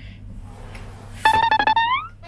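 Low room hum, then a little over a second in a short instrumental phrase: quick repeated notes on one high pitch that end in an upward glide.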